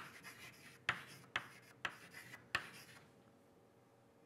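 Chalk writing on a blackboard: about five sharp taps with faint scratching between them as letters are written, stopping about three seconds in.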